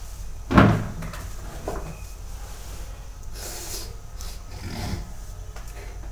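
Handling noise: a sharp thump about half a second in, then softer knocks and a brief rustle as a phone is held and moved about by hand.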